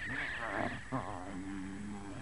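Cartoon cat's pained yowl, voiced by an actor as it is trampled underfoot: a high, wavering cry that gives way about a second in to a lower, steady moan.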